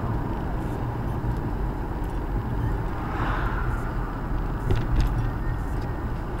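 Car driving, heard from inside the cabin: steady low engine and road rumble, with a brief rise in hiss about three seconds in and a few light clicks near the end.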